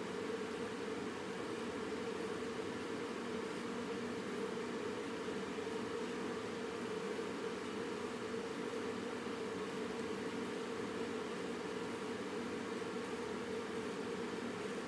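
Steady background noise: an even hiss with a low hum, unchanging throughout, with no distinct pencil strokes standing out.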